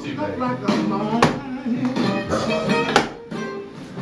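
Guitar music playing, with two thuds about two seconds apart as a wine bottle held in a shoe is struck heel-first against a wall to drive the cork out.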